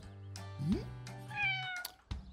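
A kitten meowing, a single meow that falls in pitch a little after halfway through, over soft background music.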